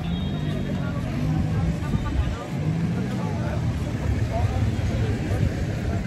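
Outdoor street ambience: a continuous low rumble, like wind on the phone's microphone or passing traffic, with indistinct voices.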